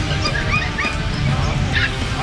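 Caged puppies whimpering and yipping in a few short, high cries, over steady background music.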